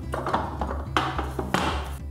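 A few sharp metallic clicks and clanks from a Lusper adjustable weight bench's steel backrest bracket as the backrest is moved through its notched positions, over quiet background music.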